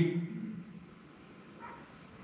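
A man's spoken word trailing off, then a pause of quiet room tone with one faint, brief sound a little past halfway.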